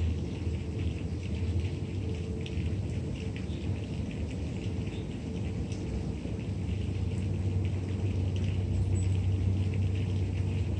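Steady low rumble of outdoor background noise, with faint scattered crackling ticks above it.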